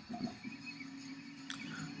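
Quiet room noise with a faint steady hum and a single light click about one and a half seconds in.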